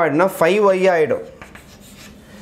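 A man's voice for about the first second, then chalk scratching on a blackboard as he writes.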